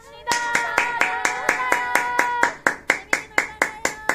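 One person clapping their hands steadily, about six claps a second. Under the claps a held tone runs for the first half and then stops, and the claps stand out more after that.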